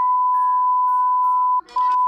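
Censor bleep: one steady high electronic tone, cut off about one and a half seconds in and resuming almost at once. Faint higher notes step down in pitch behind it.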